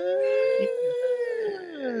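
A long howl that rises in pitch, holds, then falls away near the end.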